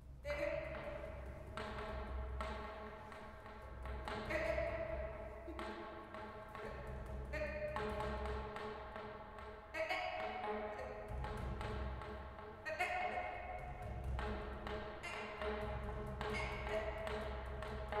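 Free improvisation for wordless voice, soprano saxophone and double bass: held pitched tones that shift and restart every two or three seconds over a low bass rumble, with many small taps and clicks scattered throughout.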